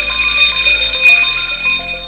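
Emergency alarm bell ringing continuously in a steady, high tone, cutting off sharply at the end: the bell signal for an emergency. Quiet background music plays underneath.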